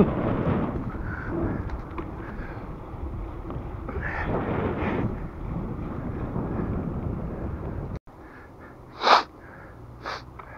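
Wind buffeting the camera's microphone while riding a bicycle in the cold, a steady rushing rumble that stops abruptly about eight seconds in. After that it is quieter, with one short, loud breath near the end.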